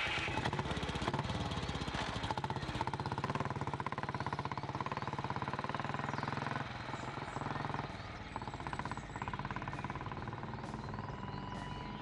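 Motorcycle engine running with a rapid, even train of firing pulses. It cuts in suddenly at the start and drops somewhat in level after about six and a half seconds.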